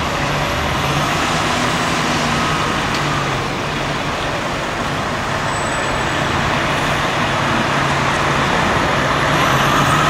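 Aerial ladder fire truck's diesel engine running as it pulls out of the station, a steady low engine drone that grows a little louder near the end.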